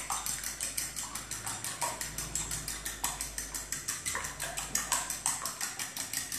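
Fork beating eggs in a small bowl: a quick, even rhythm of about seven or eight light clicks a second as the fork strikes the bowl.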